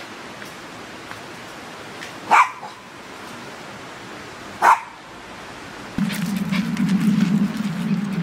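A small white dog barks twice, two single sharp barks a couple of seconds apart, the excited barking of a dog that is thrilled to be out on a walk. Near the end a steady low hum sets in, with light clicking over it.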